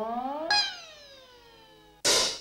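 Solo violin sliding upward in pitch. At about half a second it gives a sharp accent, then glides down in a long falling slide that fades away.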